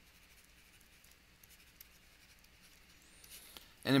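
Faint scratching and light ticking of a stylus writing by hand on a tablet. A man's voice begins speaking near the end.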